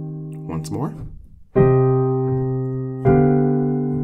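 Sustained block chords played on a piano-voiced keyboard, each struck and left to ring down, with new chords at about one-and-a-half-second intervals: a short four-voice chord progression in C minor. A brief voice sound comes about half a second in, between chords.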